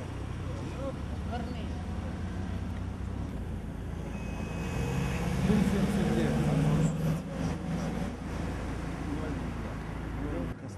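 Steady low hum of an idling vehicle engine under murmured voices, with one short electronic beep about four seconds in from a handheld police breathalyzer.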